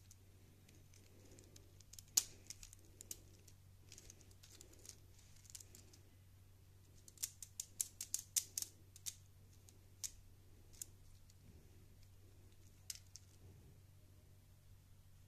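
Lego Technic plastic parts clicking and clattering as they are handled and pulled apart by hand: scattered sharp clicks, with a quick run of them about seven to nine seconds in, over a faint steady low hum.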